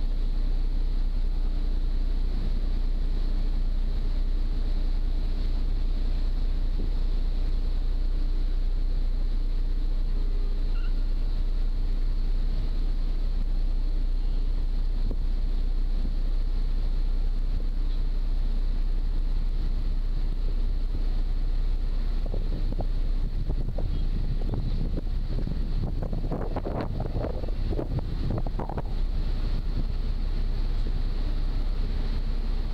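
Passenger ferry's engines running steadily, heard on board as a loud low drone with a faint steady hum over it, and wind on the microphone. Near the end, rougher, uneven noise rises over the drone.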